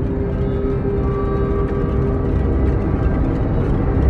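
Background music: dark, ominous held tones over a heavy low rumble.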